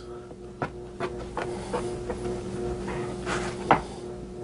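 A knife sawing lengthwise through a crusty bread loaf on a plastic cutting board, with a string of short knocks and scrapes as the blade meets the board; the sharpest knock comes near the end. A steady low hum runs underneath.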